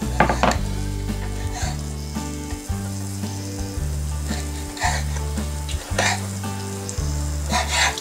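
Rice, onions and chorizo frying and sizzling in a saucepan, with a few sharp knife strokes on a wooden chopping board as clam meat is sliced. A backing track's bass notes change in steps underneath.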